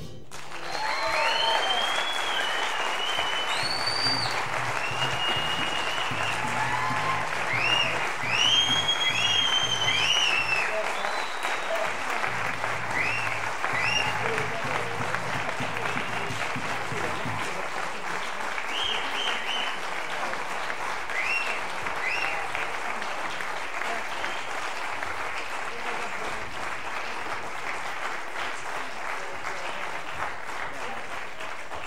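Concert audience applauding and cheering, with scattered whoops and whistles. It swells about a second in, is loudest around a third of the way through, then slowly thins out.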